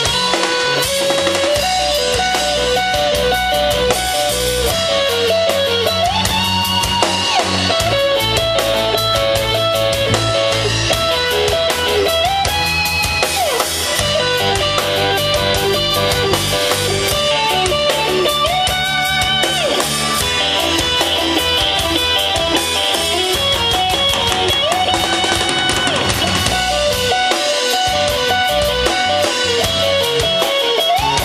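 A live band playing a rock song: a drum kit keeping a steady beat with cymbals, under electric guitar, with a melodic riff that comes round about every six seconds.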